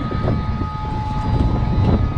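Semi-truck's diesel engine idling steadily, with the trailer's air suspension filling with air.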